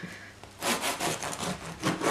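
Kitchen knife sawing back and forth through the crunchy crust of a freshly baked loaf of pizza bread, a series of cutting strokes starting about half a second in.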